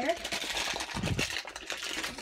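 Plastic bag crinkling and rustling as it is handled, a dense run of fine crackles, with a low thump about a second in.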